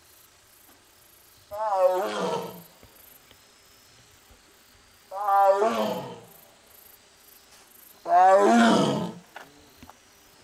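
Korean (Amur) tiger calling out three times, each call about a second long and about three seconds apart, after being separated from its companion.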